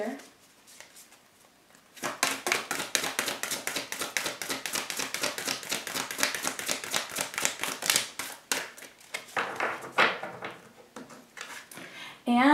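Deck of oracle cards being shuffled by hand: a rapid run of card flicks and slaps starting about two seconds in, thinning out near the end.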